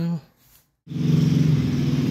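A word ends, and after a brief silence a steady, low engine hum starts abruptly about a second in and runs on as the loudest sound.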